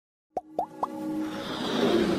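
Animated logo intro sound effects: three quick plops, each rising sharply in pitch, a quarter second apart, then a swelling whoosh with held musical tones that grows louder.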